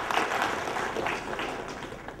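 Audience applauding, the clapping dying away.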